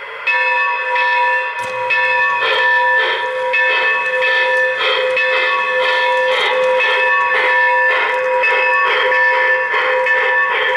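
A steam locomotive bell ringing repeatedly at an even pace, played through the onboard sound system of an MTH O-gauge model of Norfolk & Western J-class steam locomotive No. 611.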